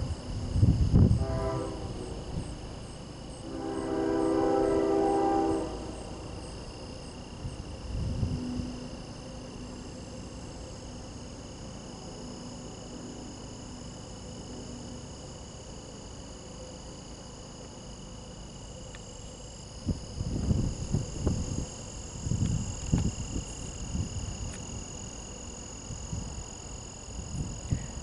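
Horn of an approaching CSX freight train's lead diesel locomotive, an ES40DC, sounding one long steady blast about four seconds in, over a constant high chirring of insects. Bursts of low rumble come near the start and again in the last third.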